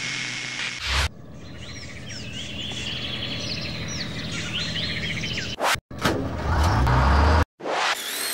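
Small birds chirping over a steady low hum. Shortly before the end a loud low rumble comes in, then cuts off abruptly.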